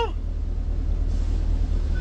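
Steady low rumble inside a parked car's cabin, with a faint hiss over it.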